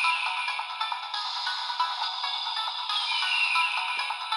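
Kamen Rider DX Dooms Geats Raise Buckle toy playing electronic music through its small built-in speaker. The sound is thin, with no bass, and has a falling whistle-like sweep near the start and again near the end.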